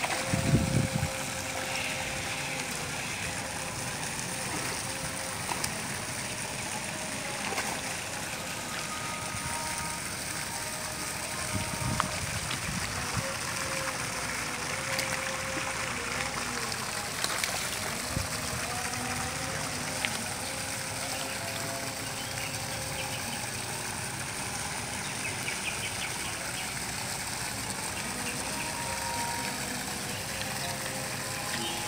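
A hooked bawal (freshwater pomfret) thrashing at the water surface, with the loudest splash about a second in and a smaller one around twelve seconds in, over a steady background hiss.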